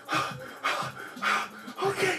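A man panting hard, four quick breaths about half a second apart, in pain from being tattooed.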